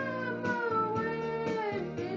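A boy's voice singing a hymn, holding a long note that slides downward near the end before moving to the next note. Chords on an electronic keyboard are struck about once a second underneath.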